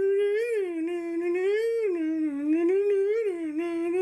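A person humming one long unbroken line, the pitch sliding slowly up and down.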